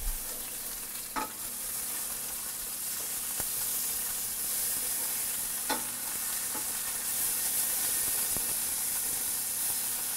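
Garlic, anchovies and red pepper flakes sizzling steadily in hot olive oil in a stainless steel sauté pan as they are stirred with a wooden spoon, frying until the anchovies melt down. The spoon knocks against the pan about a second in and again just before the six-second mark.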